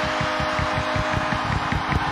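Arena goal horn sounding one steady low chord with a fast low pulsing, over a cheering home crowd, marking a home goal.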